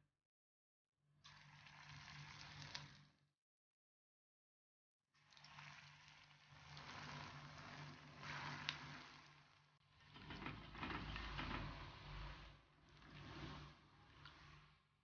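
Dal-and-potato pakoda batter deep-frying in hot oil in a cast-iron kadai: a steady sizzling with a faint low hum beneath. It is broken by two short gaps of total silence in the first five seconds, where the video is cut.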